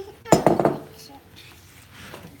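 Kitchen clatter: one sharp knock about a third of a second in, then a few quick lighter clinks, from a glass bowl and a wooden spoon knocking against a mixing bowl as pudding mixture is worked.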